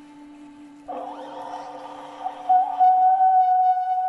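Ice horn blown: a new note enters about a second in, wavers, then settles into a loud, steady held tone, over a lower sustained note that fades near the end.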